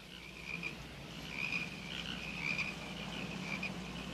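Night-time chorus of calling frogs and insects, a steady, softly pulsing chirping held around one high pitch, over a faint low hum.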